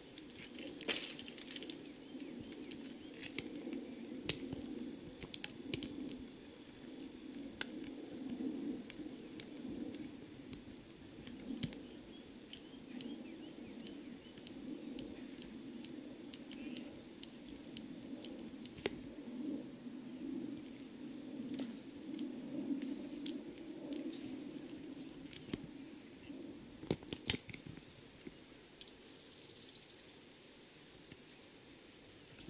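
Quiet outdoor ambience: a steady low hum with scattered light clicks and a single short, high bird chirp early on, and a few sharper clicks near the end.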